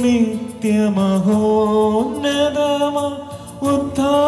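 A single voice chanting a sung liturgical prayer in slow, long-held notes that waver and slide between pitches, with brief breaths between phrases.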